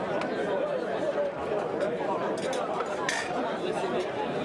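Murmured chatter of many spectators talking at once, with a brief sharp clink about three seconds in.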